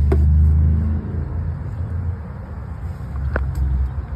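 The 2021 Honda Pilot's V6 engine idling, a steady low rumble heard from inside the vehicle, loudest in the first second. A click comes right at the start and a short tick about three and a half seconds in.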